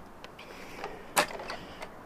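Footsteps on wooden boardwalk planks: a few short, faint knocks, the loudest about a second in.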